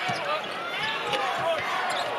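A basketball dribbled on a hardwood court during live play, with voices in the arena behind it.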